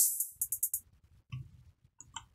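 Drum loop playing back through an EQ plugin: a bright, hissy hit at the start fades out and playback stops under a second in, leaving only faint low sound and a soft click.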